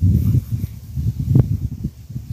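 Wind buffeting the microphone: a gusty low rumble that rises and falls unevenly, with one sharper gust about one and a half seconds in.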